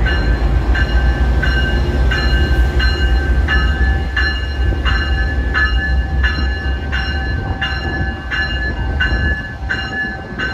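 Amtrak GE Genesis diesel locomotive running close by with a heavy low rumble, its bell ringing steadily about twice a second.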